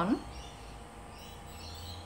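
Galvanic body spa beeping three times as it is switched on, faint and high-pitched, signalling that it is set to its highest level of current.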